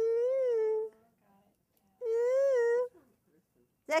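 A woman's voice humming or singing two long wordless notes, each about a second long, the pitch rising slightly and falling back.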